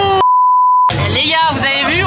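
A steady single-tone editing bleep at about 1 kHz, roughly two-thirds of a second long, with all other sound cut out beneath it: a censor bleep. A drawn-out falling voice runs into it, and speech over background music resumes right after.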